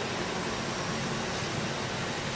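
Steady, even background hiss with no clear tone, rhythm or sudden sounds.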